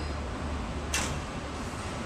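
A single sharp snap about a second in, over steady room noise with a low hum: the spring-loaded gate of a Bostwick consistometer being released so the barbecue sauce starts to flow down the trough for a thickness reading.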